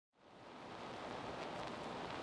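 Faint steady hiss: the recording's background noise floor, with no distinct event.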